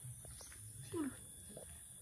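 A baby macaque gives one short falling squeal about a second in, over faint low background murmur and a couple of light clicks.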